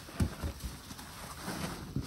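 Gloved hands plunging into a plastic basin of thick soapy suds. The water sloshes, with a few short low thuds in the first second and another right at the end.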